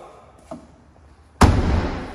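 The tailgate of a Volkswagen Up hatchback slammed shut: one heavy thud about one and a half seconds in, after a faint knock.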